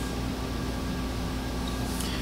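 Steady room tone between spoken remarks: an even low hum and hiss with no distinct events.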